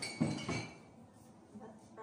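Glass bottles clinking together as they are handled, one bright clink at the start ringing briefly.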